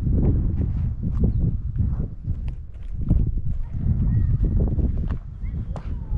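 Footsteps on hardened lava rock, an irregular series of short scuffs and clicks, over a heavy low rumble of wind on the microphone.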